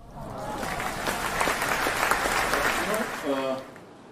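Audience applauding, dense clapping that fades away near the end, with a man's voice briefly heard as it dies down.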